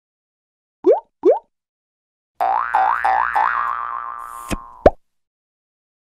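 Cartoon sound effects for an animated logo: two quick rising boings about a second in, then a warbling tone that bends up three times before holding and fading. It ends with two quick rising plops near five seconds, the second the loudest.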